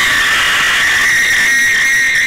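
One long, loud, high-pitched scream held on a single steady note.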